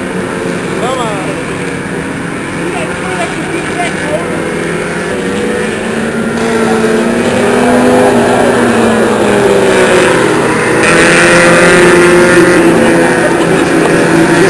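Engines of several compact sedan race cars running around an oval track, their pitch rising and falling as they go through the turns. They grow louder in the second half, loudest as cars pass close.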